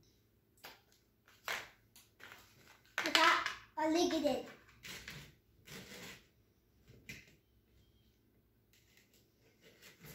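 A young child's voice making short wordless sounds and mumbles, loudest about three to four and a half seconds in, among small scattered taps and rustles.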